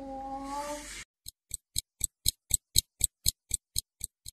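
A drawn-out voice-like sound in the first second, then a clock ticking sharply and evenly, about four ticks a second.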